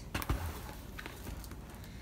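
Faint handling sounds of a shrink-wrapped cardboard kit box being turned over on a table: a few light clicks and a soft thump at the start, two more faint clicks about a second in, then quiet room hiss.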